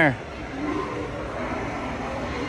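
Steady background noise of a large store interior, with a faint far-off voice about half a second in.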